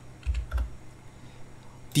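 Computer keyboard being typed on: a short run of keystrokes in the first half second or so, then quiet.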